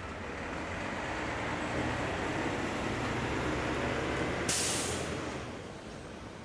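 Recycling truck's diesel engine running, slowly growing louder, with a sudden short hiss of air about four and a half seconds in, after which the noise fades.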